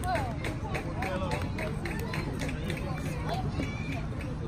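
Indistinct chatter of several people talking at a distance, with a steady low rumble on the microphone and scattered short sharp taps or claps.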